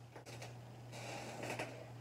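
Faint, sticky, wet clicking and crackling from a sauce-coated piece of smoked sausage being handled in the fingers close to the microphone, with a denser patch about a second in. A steady low hum runs underneath.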